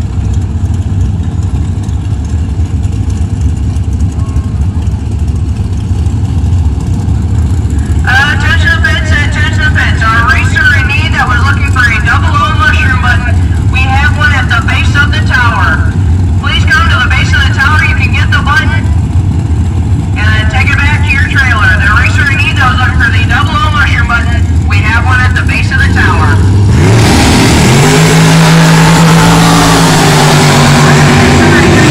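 Engines at a drag strip running in a steady low rumble, with a voice talking over them through much of the middle. Near the end a race engine revs up, rising in pitch, and holds at a high steady note.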